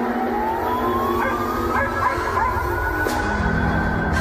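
Instrumental background music with held synth notes and a sliding tone that rises over the first two seconds, over a deep bass that swells about three seconds in.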